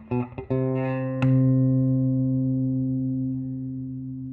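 Leo Fender's breadboard bass, a plank-bodied pickup-tester electric bass, plucked by hand: a few quick notes, then about a second in one note is struck and left to ring, fading slowly for about three seconds.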